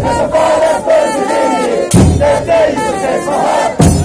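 A large crowd of football ultras chanting loudly in unison, with a big drum struck about every two seconds.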